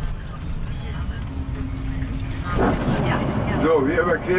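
Steady low vehicle rumble, with people's voices over it from about two and a half seconds in.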